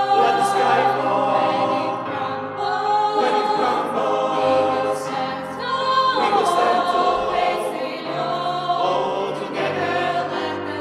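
Mixed SATB choir singing sustained chords in harmony, without clear words, with digital piano accompaniment; the chords shift about six seconds in.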